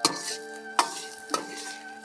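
Metal wok spatula stirring and scraping fried rice around a sizzling wok, with three sharp clinks of the spatula against the pan in the first second and a half.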